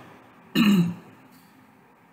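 A person clearing their throat once, a short, loud rasp about half a second in.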